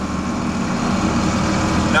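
John Deere tractor engine running steadily under load while pulling a corn planter in the ground, heard from inside the cab as a constant drone.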